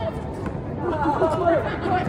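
Several people's voices chattering and calling out over a steady background noise.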